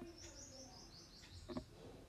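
Faint bird chirping in the background: a quick run of short, high, falling notes. A single click about one and a half seconds in.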